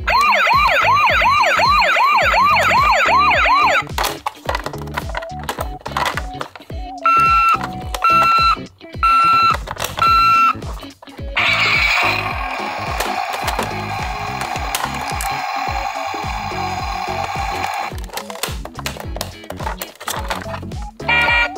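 Toy ambulances' electronic sound effects: a fast wailing siren for about four seconds, then clicks of the toys being handled, four short evenly spaced beeps, and a longer steady electronic sound.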